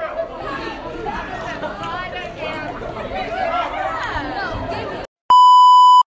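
Several voices talking over one another in a school cafeteria, then a sudden cut to silence and a loud, steady electronic beep, the test tone of a TV-static glitch transition, lasting under a second.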